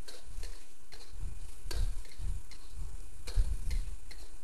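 Metal wok spatula scraping and clinking against a wok as rice cakes, kimchi and scallions are stir-fried: irregular sharp clinks about once or twice a second over a low steady rumble.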